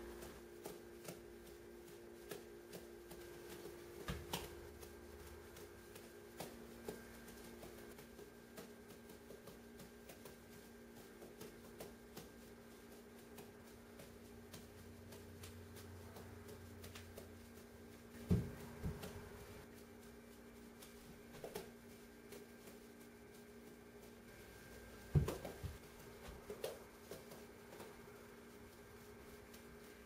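Soft, quick pats of beanbag juggling balls (Tossaball TX Hybrids) landing in the hands during three-ball juggling, with a few louder thumps along the way, over a steady low hum.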